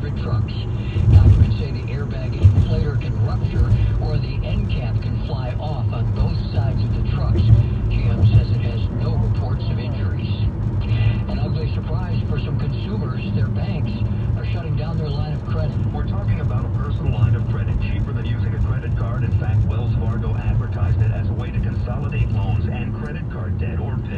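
AM news-radio broadcast playing through the car's speakers, a voice whose words are not made out, over a steady low road and engine rumble in the cabin.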